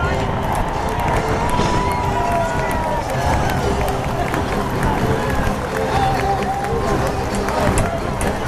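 Large stadium crowd cheering and shouting, many voices at once, with music playing over the stadium sound system underneath.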